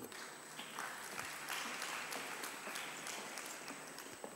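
Audience applauding lightly: a faint patter of clapping that builds about a second in and thins out near the end.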